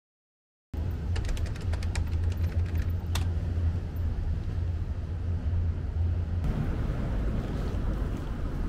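Outdoor city street ambience: a steady low rumble of traffic and wind on the microphone, starting abruptly about a second in. A run of light clicks comes in the first couple of seconds, with one sharper click about three seconds in.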